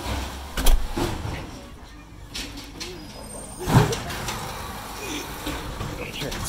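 Automated side-loading garbage truck running nearby, its engine a steady low rumble, with two loud knocks, one just under a second in and one near four seconds in.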